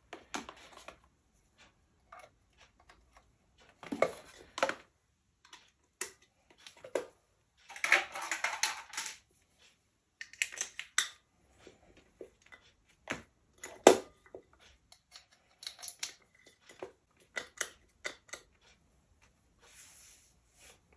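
Irregular clicks, knocks and short clatters of BOSS guitar pedals and their power cables being handled and plugged in, the loudest a sharp click about two-thirds of the way through.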